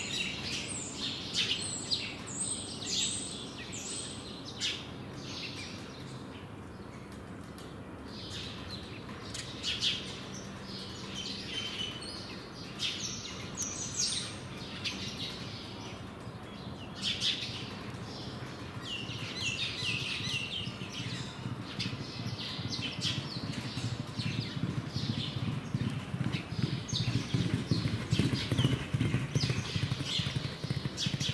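Birds chirping throughout, with a galloping racehorse's hoofbeats on turf growing louder as it approaches in the last several seconds.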